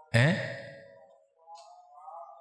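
A man's single drawn-out, sigh-like vocal "ae", starting loud and fading away over about a second, followed by faint low tones.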